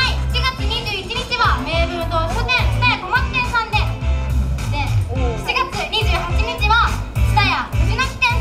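Young women talking into microphones over the stage speakers, with background music and a steady bass beat playing underneath.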